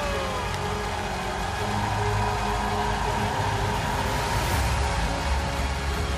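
A girl's last sung note trails off, and a studio audience claps and cheers over steady music.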